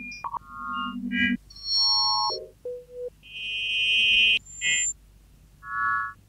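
Early electronic tape music: short synthetic tones at scattered low and high pitches, each starting and stopping abruptly, with brief gaps between. A low buzzing, pulsed tone comes near the start, and a longer high tone comes a little past the middle.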